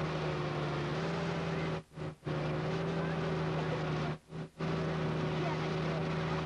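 A steady low buzzing hum with hiss, cutting out briefly twice.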